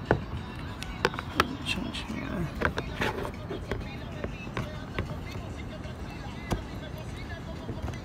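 Serrated kitchen scissors snipping through plastic tabs on a car grille piece: a series of sharp, irregularly spaced snips.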